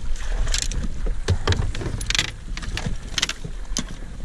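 Water splashing in short, irregular bursts as a netted musky thrashes beside the boat, over a steady low wind rumble on the microphone.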